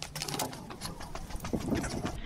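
A pigeon cooing, over the crinkle of plastic packaging being carried.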